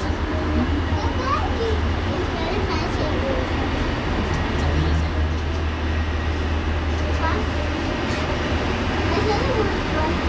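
Inside a moving Roosevelt Island Tramway cabin: a steady low hum with passengers' voices, children's among them, talking and calling in the background. The hum weakens for a couple of seconds early on, then comes back.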